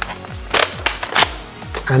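Spring-powered pump-action salt blaster dry-fired one barrel at a time, with no salt loaded: two sharp snaps about two-thirds of a second apart and a fainter click between them.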